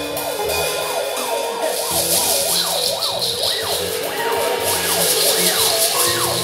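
Theremin making siren-like swoops, its pitch rising and falling about twice a second with uneven peaks. Held notes, bass and a cymbal wash from the band play under it; the cymbal wash comes in about two seconds in.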